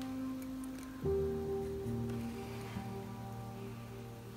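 Soft background music of long held notes, moving to a new chord about a second in. Underneath it, a coloured pencil scratches faintly on sketchbook paper.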